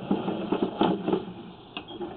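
Sewer inspection camera's push cable being pulled back out of the pipe, with irregular clicking and rattling and a few sharper knocks.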